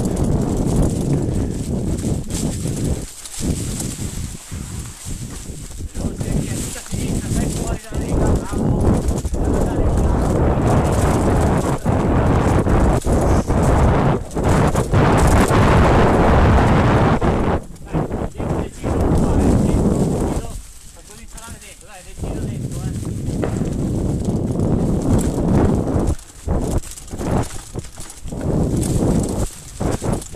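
Mountain bike running fast downhill over a dirt trail covered in dry leaves: loud wind rush on the helmet-camera microphone, mixed with the tyres rolling through the leaves and the bike rattling over bumps. The noise dips briefly many times and eases off for a couple of seconds about two-thirds of the way through.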